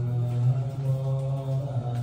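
Chanting on one steady low pitch, in the manner of Buddhist sutra recitation, starting abruptly and held on a single note.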